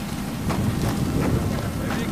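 Wind rumbling on the microphone, with a few short thuds and knocks of footsteps and gear from people moving quickly on foot.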